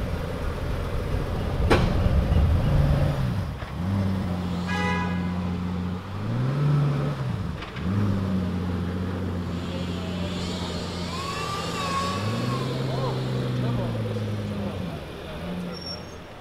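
Hypercar engine idling with a low steady drone that rises briefly in revs twice, with voices of onlookers around it. A single sharp click comes about two seconds in.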